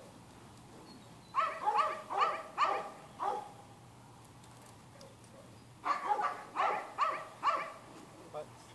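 A dog barking in two runs of about five or six quick barks each, the first starting about a second and a half in, the second near the end.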